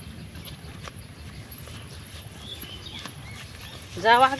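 Quiet outdoor rural ambience: a steady low rumble with a few faint clicks and faint distant chirps.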